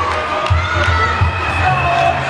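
Basketball fans in an arena shouting and cheering together, many voices at once, with a low thump repeating about twice a second beneath them.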